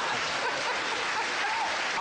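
Studio audience applauding, a steady dense clapping with faint voices underneath.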